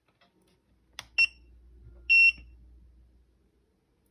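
GUTA tire pressure monitor beeping as a tire sensor pairs with it: a click about a second in, a short high beep right after, then a longer high beep a second later, the signal that the sensor is connected.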